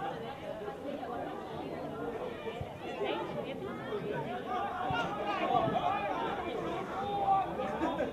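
Several voices calling out and chattering over one another, with no single clear speaker, as players and spectators shout during open play in rugby league. A few short knocks sound under the voices.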